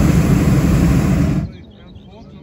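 Hot-air balloon's propane burner firing in one loud, steady blast that cuts off abruptly about a second and a half in.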